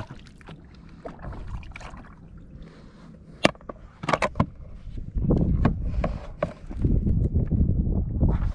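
Handling sounds of a plastic fish measuring board on a kayak. A sharp click comes about three and a half seconds in and a few more around four seconds, then a run of low knocks and rustling.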